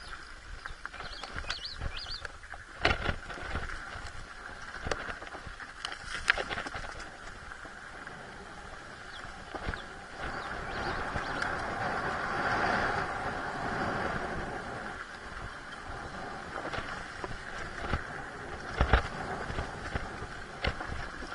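Enduro dirt bike's engine running on a rough downhill trail, heard close from the rider's camera, with scattered knocks and rattles from the bike over rocks. The engine gets louder for a few seconds about halfway through.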